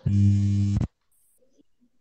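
Loud electrical buzz coming through a participant's open microphone on a video call: a steady hum pitched around 100 Hz that starts suddenly and cuts off abruptly just under a second in.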